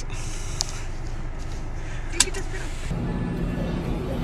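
Low steady rumble of a car's engine running, heard from inside the cabin, with one sharp click a little after two seconds. About three seconds in it gives way to the background noise of a busy restaurant.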